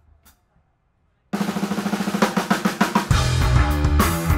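Live rock band starting a song: about a second in, a drum kit comes in suddenly with a quick run of drum strokes, and near the end low bass notes and electric guitar join in.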